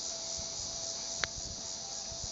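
Steady high-pitched insect chorus in summer riverside grass, with soft low thumps from walking on grass and a single sharp click a little after a second in.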